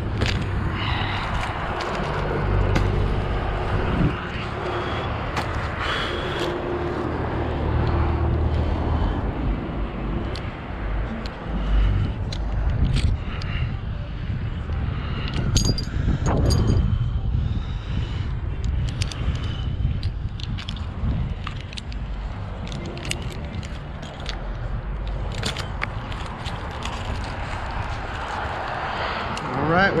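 Metal climbing hardware clinking and jingling, and gear scraping and rustling against a date palm's rough trunk and dry frond bases, as a climber works his way down on a flipline. Under it runs a steady low rumble.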